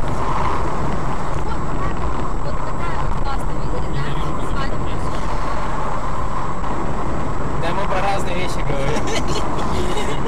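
Steady road and engine noise of a moving car, recorded by a dash cam inside the cabin, with faint voices near the end.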